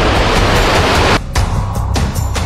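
Rocket engine roar from a liftoff under loud intro music with a heavy bass beat; the roar cuts off suddenly just over a second in, leaving the music.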